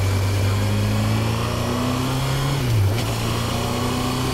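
Honda CB1000R's inline-four engine pulling under acceleration, its note rising slowly, with a brief sharp dip in revs just before three seconds in, as at a gear change, then running on steadily.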